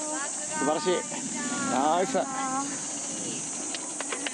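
A steady, high-pitched insect drone, with short excited voices over it twice.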